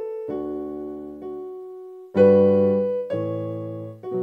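Yamaha PSR-I455 portable keyboard played with a piano voice: slow, sustained chords struck about once a second, each fading away, the loudest a little over two seconds in.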